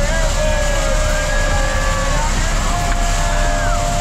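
Steady engine and wind noise inside a small jump plane's cabin, with several people whooping and cheering over it in long, drawn-out calls.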